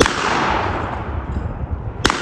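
An over-under shotgun fires a single shot at the very start, and the blast echoes and dies away over the next two seconds.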